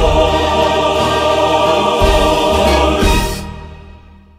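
Choir and band holding the song's last sung word, 'Lord,' as one long final chord. The sound fades out over the last second or so.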